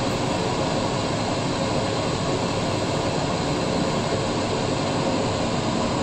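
A steady, even rushing noise with no distinct events, constant in level throughout.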